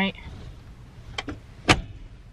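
Plastic phone car mount clicking as it is adjusted: a couple of light clicks a little after a second in, then one sharp, louder click.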